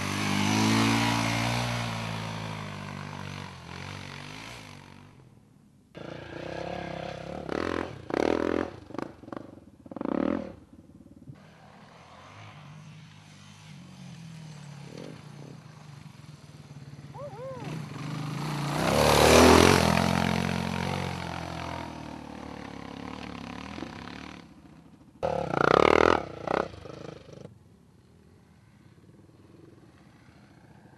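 Off-road dirt bike engines revving and riding by in a string of short clips, the sound jumping abruptly at the cuts. The loudest is a bike passing close about two-thirds through, its engine pitch rising and then dropping as it goes by.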